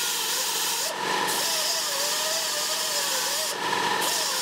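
Die grinder with a small abrasive wheel grinding into a steel motorcycle drive chain link, throwing sparks, to cut off extra links and shorten the chain. A steady high grinding hiss over a motor whine that wavers in pitch as the wheel loads up. The grinding breaks off briefly about a second in and again near the end.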